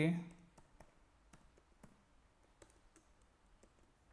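Faint, irregular clicking of computer keyboard keys as a password is typed, about a dozen keystrokes.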